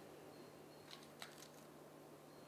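Quiet eating sounds: a metal fork gives two faint clicks against a salad bowl about a second in, over a faint steady hum.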